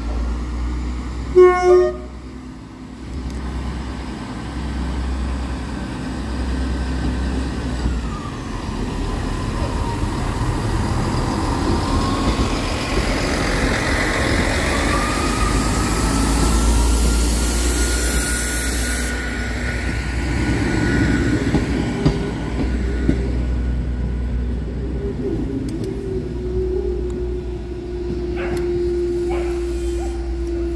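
Class 158 diesel multiple unit sounding two short horn toots about a second and a half in, then its diesel engines running as it pulls away over the level crossing, with a whine that glides up in pitch. A steady tone comes in near the end.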